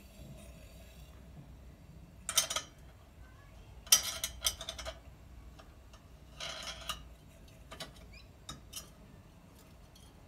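Metal clinks and scrapes from a dual-fuel lantern's metal top and cage being handled, in three short bursts with a few light clicks afterwards.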